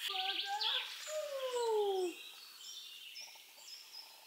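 Songbirds chirping and singing, with short, high, repeated notes through the second half. Over the birds, a person's voice is heard in the first second or two: a brief sound, then a long pitch that falls.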